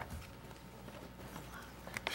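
Faint paper handling and small knocks at a desk, with a sharp click at the start and another near the end, over a steady low room hum.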